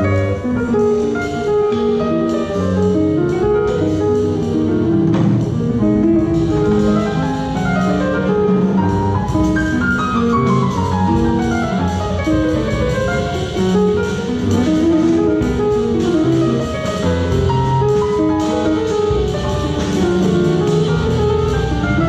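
Live jazz quartet playing a tune: piano, plucked double bass and drum kit, with the saxophone at the microphone.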